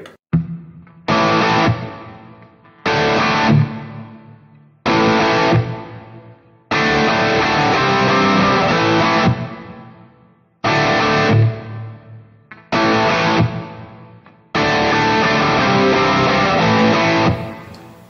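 Electric guitar (Les Paul type) playing the song's closing break: seven struck chords, each left to ring and fade, the fourth and the last held longest.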